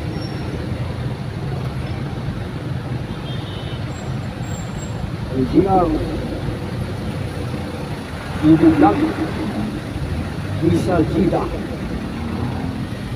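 Steady low engine and road rumble heard from inside a slowly moving vehicle, with a few brief snatches of voices around the middle and near the end.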